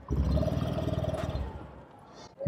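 Honda Activa scooter's single-cylinder engine starting suddenly and running steadily at idle, heard close to the exhaust, then fading out after about a second and a half.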